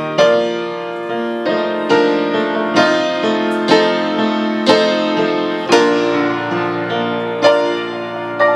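Grand piano played solo at a slow, even pace, a new chord or melody note struck about once a second and left to ring out.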